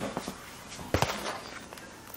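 Handling knocks and bumps as a camera is set down, with one sharp knock about a second in.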